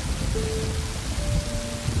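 Steady rain-like hiss with soft background music: a few held single notes, one after another.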